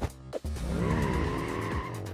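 Cartoon sound effect of a character zooming off, a pitched rush that rises and then falls, over background music.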